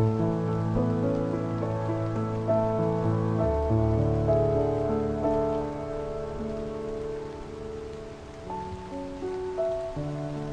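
Slow, calm piano improvisation on a sampled grand piano (Spitfire LABS Autograph Grand), with held low chords over a steady rain ambience. A deeper bass note comes in about a third of the way through, and the playing softens before a few new notes near the end.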